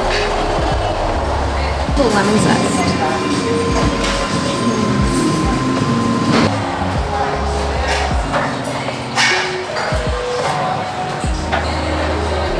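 Background instrumental music with a bass line stepping between sustained low notes every second or two, over a steady beat.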